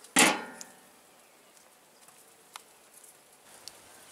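Diamond-plate metal lid of a fish smoker dropped shut with one loud clang that rings briefly, about a quarter second in, followed by a couple of faint ticks.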